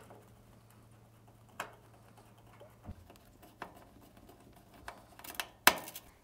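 Hand screwdriver driving a screw back into an oven's metal panel: scattered small clicks and taps about a second apart, with a louder cluster of clicks near the end.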